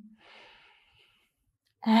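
A woman's soft, audible in-breath lasting about a second, taken on the yoga cue to inhale.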